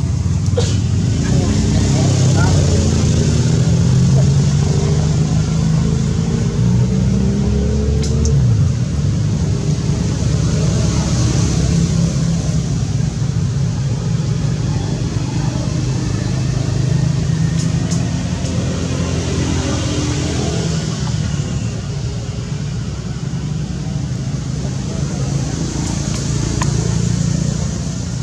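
Indistinct human voices talking over a steady low rumble, with a high hiss that swells and fades several times.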